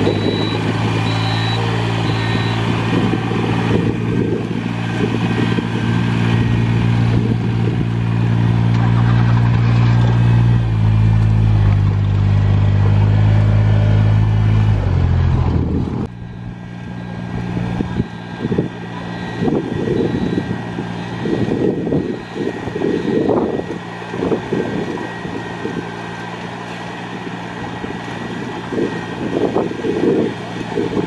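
Ride-on rice transplanter's engine running close by, its pitch shifting a few times, with a few short high beeps near the start. About halfway it becomes suddenly fainter and distant, with gusts of wind noise on the microphone.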